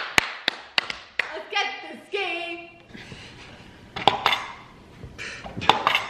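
Trouble game's Pop-O-Matic plastic dice dome being pressed, a quick run of sharp plastic clicks in the first second and more around four seconds in and near the end, as the die pops inside the bubble.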